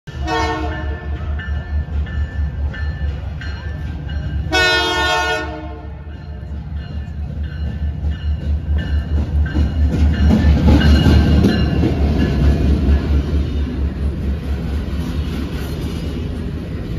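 CP Holiday Train's diesel locomotive sounding its horn twice, a short blast at the start and a longer one of about a second some four seconds in, then passing close with its engine running in a steady low pulse, loudest about ten to twelve seconds in as the locomotive and first cars go by.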